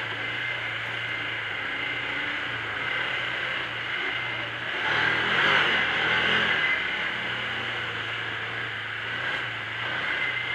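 Can-Am Commander 800 side-by-side's V-twin engine running while driving along a dirt trail, heard from on board. About five seconds in the revs rise and the engine gets louder for a second or two, then it settles back to a steady pull.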